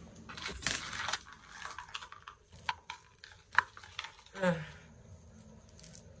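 Rustling of plastic packaging, then a few sharp metallic clinks as a Cuban link chain is handled.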